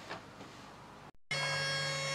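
Faint room tone, cut off by a brief dropout a little over a second in, after which a steady electrical whine made of several fixed tones with a low hum underneath sets in.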